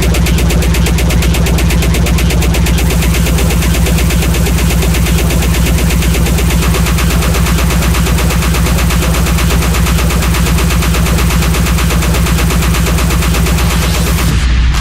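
Speedcore or extratone: distorted kick drums at an extreme tempo, announced as 5000 BPM, so fast that the hits blur into one loud, steady, machine-gun-like buzz. It cuts off suddenly at the end.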